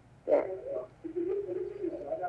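A person's voice: a short "dạ", then about a second in a low, drawn-out hum, held steady with a slight waver.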